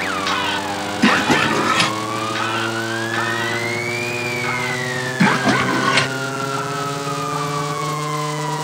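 Trailer soundtrack: a sustained chord under a siren-like wail that glides slowly up for about four seconds and then slowly back down. Pairs of sharp hits come about a second in and again around five to six seconds in.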